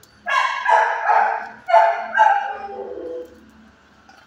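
A dog barking four times in about two seconds, the last bark drawn out and falling in pitch.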